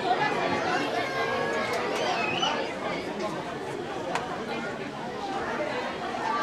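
Many voices of children and adults chattering over one another, with no single voice standing out; a sharp click sounds about four seconds in.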